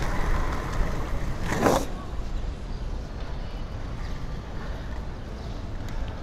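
Inline skates (Powerslide Kronos Reign, 85a wheels) rolling over city asphalt: a steady low road rumble mixed with wind on the microphone and street traffic. A brief wavering pitched sound comes about one and a half seconds in.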